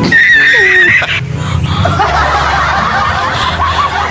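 A person laughing: a high, held squeal in about the first second, then a run of quick snickering chuckles.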